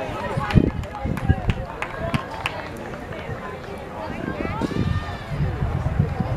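Players and spectators shouting and calling out during a soccer match, with several sharp knocks in the first two and a half seconds.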